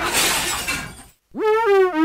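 Glass shattering sound effect, its crash fading out about a second in. After a brief silence a synthesizer jingle starts with a rising glide into stepping notes.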